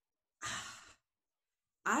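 A woman's short sigh: a breathy exhale of about half a second that fades away.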